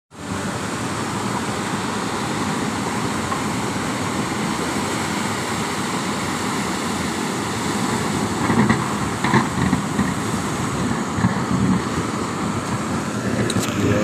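Steady rushing of surf breaking and washing up a stony beach, with a few faint brief sounds about two thirds of the way through.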